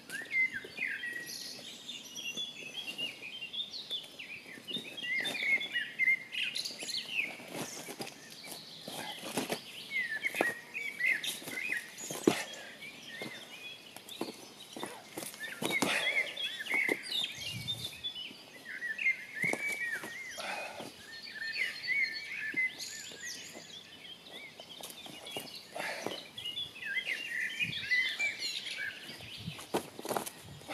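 Small songbirds chirping and singing in repeated short phrases throughout, with scattered crunches and scuffs of feet moving on gravel.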